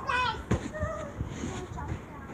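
A child's high-pitched voice calls out briefly, with a single sharp knock about half a second in and scattered faint voices afterwards.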